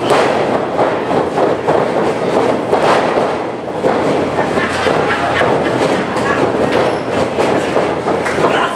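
Spectators shouting and cheering: a loud, continuous crowd din in a small indoor hall.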